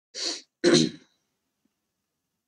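A man clears his throat: a short breathy burst, then a louder, deeper one, both within the first second.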